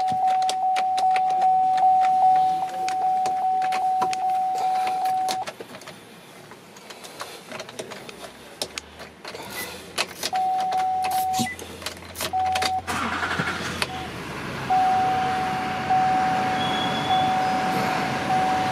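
Inside a pickup cab, a steady electronic warning-chime tone sounds for several seconds over rapid clicking, stops, then returns in short pieces and again steadily near the end. From a little past the middle, the climate-control blower fan comes on with a rushing of air.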